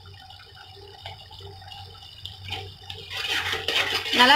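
A slotted metal spatula stirring thick tomato gravy in a kadai: wet squelching and scraping, faint at first and louder near the end.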